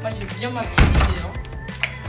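A single dull thunk just under a second in, over background music and faint voices.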